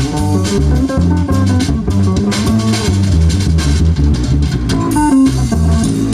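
Live band music in the norteño style: a bajo sexto and bass guitar play a rhythmic instrumental passage, backed by drums.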